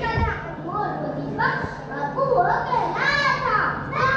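Young children's voices speaking and calling out together, through a stage microphone.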